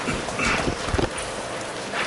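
A few low thumps and knocks of a microphone on its stand being handled and adjusted, bunched together about a second in.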